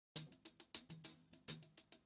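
Quiet, light clicking percussion in an uneven rhythm, about four ticks a second: the soft lead-in of background music.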